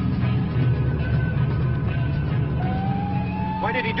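Dramatic film soundtrack music over a steady low car-engine drone during a night-time police car chase. A little past halfway a single high tone rises and then holds.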